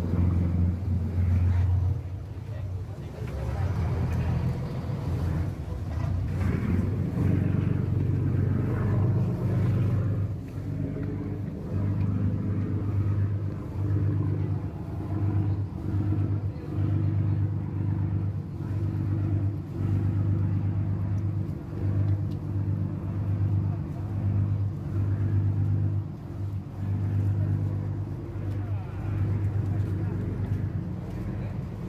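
Boat engine running low and steady: a deep hum that swells and eases about once a second while the bumboat holds against the jetty.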